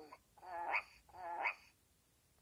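Fisher-Price interactive talking puppy plush toy playing two short, matching calls from its built-in speaker, each rising in pitch at the end.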